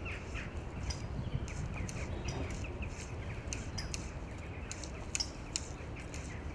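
Wind buffeting the microphone as a steady low rumble, with small birds chirping in the background in many short, high calls.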